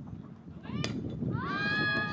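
A bat striking a softball once with a sharp crack a little under a second in, followed by a long high-pitched yell from a spectator that grows louder and is the loudest sound, over low crowd murmur.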